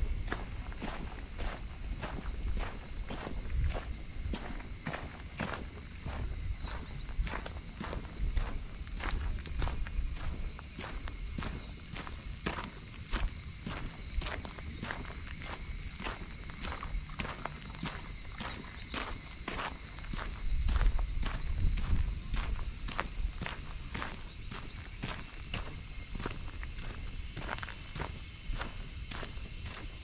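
Footsteps of a person walking at a steady pace on a dirt path, about two steps a second, over a steady high-pitched hiss that grows louder near the end.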